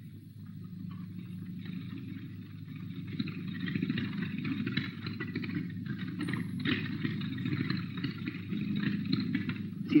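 Steady mechanical rumble and low hum of a motor-driven cart carrying the set as it moves, growing louder about three seconds in.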